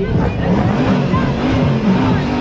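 Car engine held at high revs while its drive wheels spin in a burnout, with voices from the onlooking crowd mixed in.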